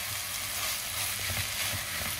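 Lentil soup ingredients frying in oil in a pot before the water goes in, a steady sizzle.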